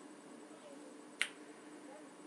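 A single finger snap about a second in, over faint room tone, made while the speaker pauses trying to recall a name.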